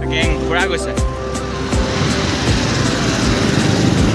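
Background music with steady tones, fading out about a second and a half in. It gives way to a steady rush of traffic noise from passing cars and motorbikes, which grows louder toward the end.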